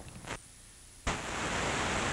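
Loud steady hiss of blank videotape static that starts suddenly about a second in, as the camcorder recording on the VHS tape ends.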